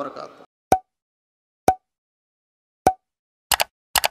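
Three single pop sound effects about a second apart, then a quick run of paired clicks near the end. These are edited-in sounds for an animated end card as its buttons pop into view.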